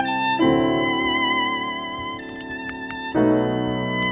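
A violin and piano playing Romantic chamber music: the violin holds long, singing notes with vibrato over piano chords. The piano moves to a new chord about half a second in and again near the end.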